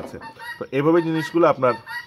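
A man speaking in a drawn-out tone, reading out a calculation; no other sound stands out.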